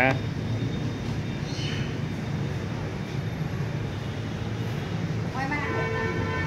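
Steady low rumble of distant street traffic.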